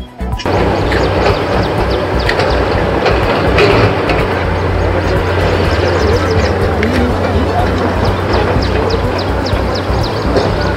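Loud, steady outdoor noise with a constant low rumble and indistinct voices, starting suddenly just after the opening.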